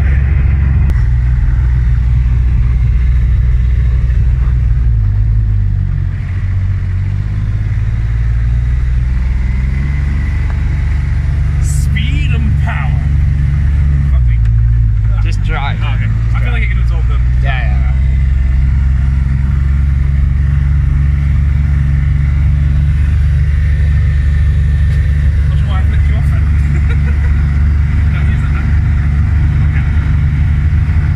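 Polaris buggy's engine running steadily under way, heard loud from on board. Its note drops and climbs back twice, about five seconds in and again about fourteen seconds in. Brief voices break through over it midway.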